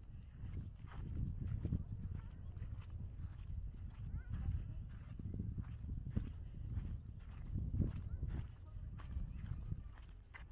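Footsteps of a person walking outdoors at a regular pace, over a gusting rumble of wind on the microphone.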